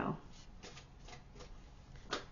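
A deck of cards being handled: a few faint, soft rustles and clicks.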